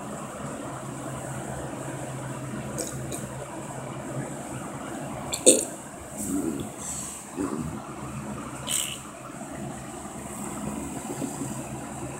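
A person drinking soda from a glass bottle: a few short gulping and handling sounds, with a sharp click about five and a half seconds in, over a steady low room hum.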